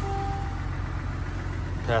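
GMC Sierra 1500's 3.0L Duramax inline-six turbodiesel idling, a steady low hum.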